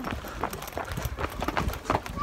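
Footsteps of several people walking on a garden path, a quick irregular patter of steps.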